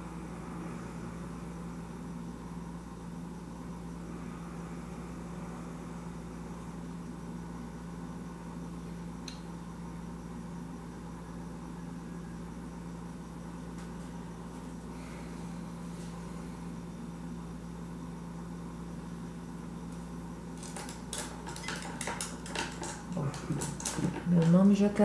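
Steady low room hum with no speech, then a run of light clicks and knocks in the last few seconds.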